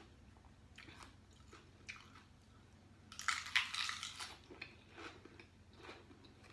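A person chewing a mouthful of fresh lettuce wrap: faint wet chewing at first, then a loud burst of crunching about three seconds in that tails off over the next second.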